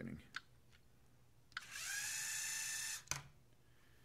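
LEGO Mindstorms EV3 robot's motors driving it forward with a whine that rises as they spin up about a second and a half in, then runs steady. The whine cuts off suddenly when the ultrasonic sensor detects the obstacle within 30 centimeters and the program stops the motors. A click follows the stop, and there is a faint click near the start.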